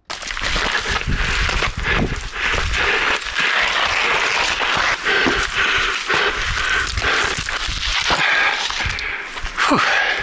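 Wind buffeting a body-worn action camera's microphone, a loud, uneven rush with a low rumble beneath it.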